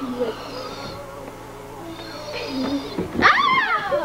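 A dog vocalising: faint sounds at first, then a loud, high cry about three seconds in that slides down in pitch.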